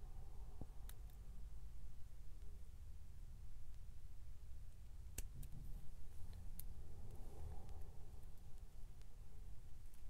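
A few faint, sharp clicks of small jewelry pliers on a thin wire loop and beads as the loop is worked closed, over quiet room tone.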